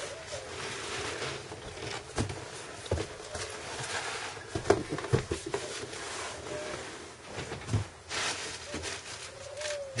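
Cardboard and foam packing peanuts rustling and scraping as a boxed soldering station is pulled out of its shipping carton and set down, with scattered light knocks and clicks of box handling.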